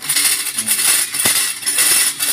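Electric sugarcane juicer (F5-800 W Pro plus) crushing a sugarcane stalk being fed through it: a steady metallic clatter and rattle, with a couple of sharp cracks in the second half.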